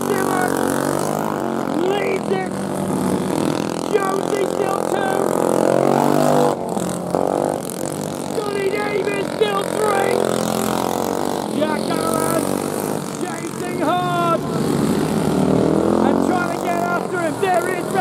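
Racing kart engines revving hard, rising and falling in pitch as karts pass close by several times.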